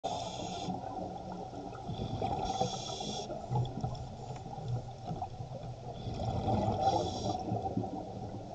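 Underwater sound of scuba breathing through a regulator: a short, high, hissing inhalation about every three seconds, over a steady low bubbling of exhaled air.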